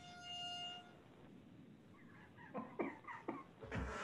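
Sound effects played over the call: a held, pitched tone for about the first second, then a quick run of short, sharp calls in the last second and a half, loudest near the end.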